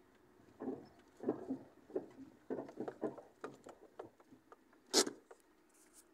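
Handling noise of a phone held inside a car: soft rustling and scraping with small clicks as it is moved about, and one sharp knock about five seconds in.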